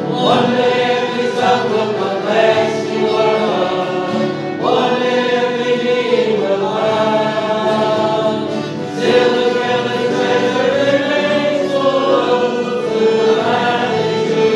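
A congregation singing a slow worship song together, accompanied by a bowed violin, in three long sung phrases.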